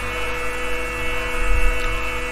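A steady drone of several held tones with a low electrical hum beneath it, and a brief low thump about one and a half seconds in.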